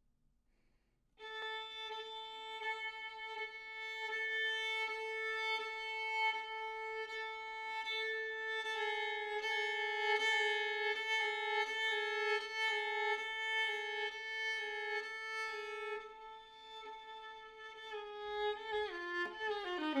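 Solo violin, bowed. One long note is sustained for about fifteen seconds and swells in loudness, then goes softer. Near the end the pitch slides downward.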